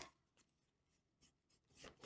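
Near silence, with a few faint, short rustles of a tarot card deck being shuffled by hand, picking up toward the end.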